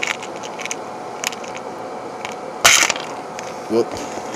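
Handling of a small black plastic box of 209 primers on a workbench: light clicks and taps, then a brief, sharp noise about two and a half seconds in, the loudest sound here.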